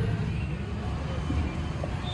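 Indistinct voices over a low, steady rumble.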